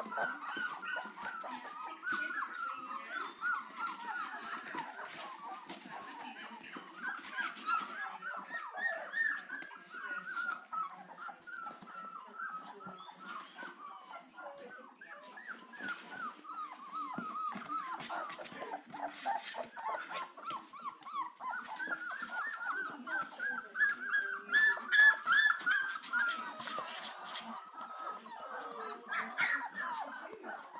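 A litter of greyhound puppies keeps up a continuous chatter of short, high-pitched squeals and whines, many overlapping calls a second. It grows loudest a little before the end.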